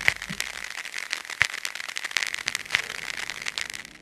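Crackle and scattered pops like the surface noise of an old recording, with no music playing.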